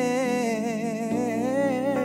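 Male singer carrying a wordless melodic line with an even vibrato, over soft instrumental backing.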